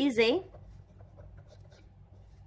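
Ballpoint pen writing on paper: faint, irregular scratching strokes as letters are written, after a brief spoken phrase at the start.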